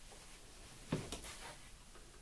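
A pair of craps dice landing on the table felt and hitting the back wall: a soft knock about a second in, then a sharper click.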